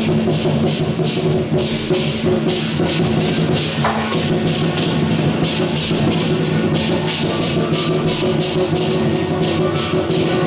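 Traditional Chinese procession percussion accompanying a dragon dance: cymbals clashing in a fast, steady rhythm over drums, with sustained melodic tones underneath that change pitch about four seconds in.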